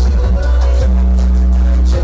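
Loud electronic backing beat played through the venue's PA: deep bass notes held for about a second at a time with brief breaks, over evenly ticking hi-hats.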